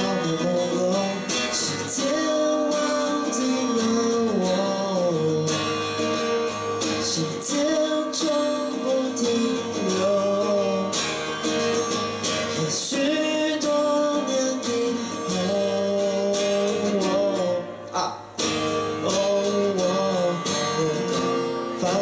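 A man singing to his own strummed acoustic guitar in a live performance. There is a short break in the sound about 18 seconds in.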